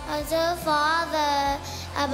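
A group of young girls singing together, one voice carried by a microphone, on held notes that bend in pitch. The singing drops away briefly near the end before the next line begins.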